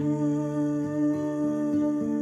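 A woman singing long held notes to her own strummed acoustic guitar.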